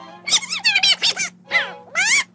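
Donald Duck's squawky cartoon duck voice laughing and jabbering in two quick runs, over a soft bed of orchestral cartoon music.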